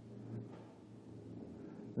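Faint room tone between sentences of a talk: a steady low electrical hum under a quiet hiss.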